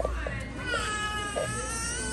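A young child crying in one long, high-pitched wail that starts about half a second in and holds with a slight dip and rise in pitch, over the low hum of a large store.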